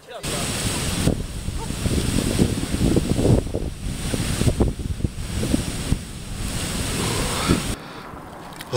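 Water rushing down a concrete weir spillway in a steady, dense rush, with wind buffeting the microphone. The sound cuts in sharply just after the start and cuts off just before the end.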